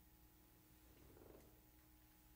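Near silence: room tone with a faint low hum, and a slight soft stir a little past a second in.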